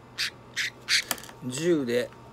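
Budgerigar, held in the hand and being dosed with medicine by syringe into its beak, giving three short harsh squawks in the first second, followed by a click. A man's voice comes in near the end.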